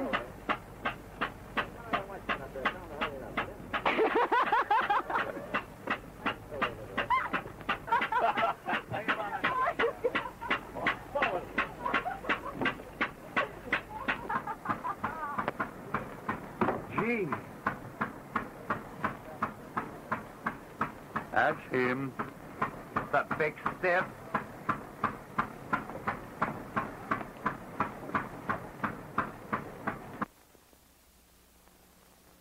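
Indistinct voices over a steady rhythmic clicking, about three clicks a second, which stops suddenly at the end.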